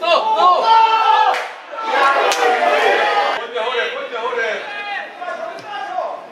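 Men's voices shouting and calling out loudly, with a sharp knock a little over two seconds in.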